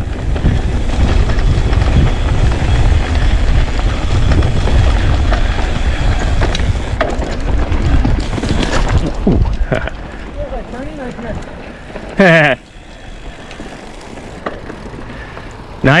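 Wind buffeting the action camera's microphone and the rumble of a mountain bike rolling down a dirt singletrack, loud for the first nine seconds or so and then much quieter as the pace eases. A short burst of a rider's voice cuts in about twelve seconds in.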